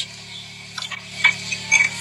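Three short crunches, about half a second apart, from biting into a crisp air-fried wonton, over a low steady hum.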